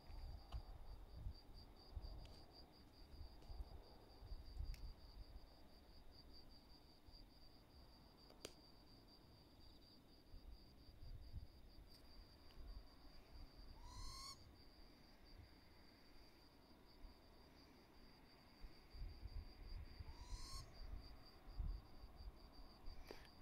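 Ruru (morepork, New Zealand owl) calling faintly twice, each call a short rising note, about six seconds apart, over a steady high-pitched trill and low rumble.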